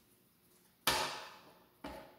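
Two sharp knocks on a granite countertop about a second apart, the second softer, each dying away quickly.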